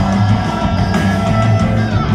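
Rock band playing live at full volume, electric guitars to the fore, in an instrumental stretch without singing.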